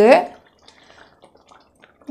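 A voice trails off at the start, then faint, scattered soft wet pops from a pan of thick masala gravy as raw fish strips are slipped into it.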